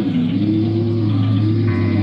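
Electric guitars run through effects pedals in a live band: a steady low drone under a wavering tone that slides up and down in pitch. Higher sustained notes come in near the end.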